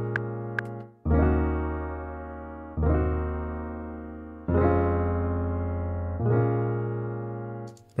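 A software piano-like instrument (the Vaults plugin, fed by the Ripchord chord generator) plays a chord progression in Eb Dorian. Four sustained chords come in about every 1.75 s. Each is lightly strummed, with its notes entering in quick succession, and each fades before the next.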